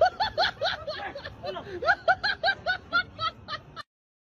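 High-pitched laughter in rapid, even bursts, about five a second, cutting off suddenly near the end.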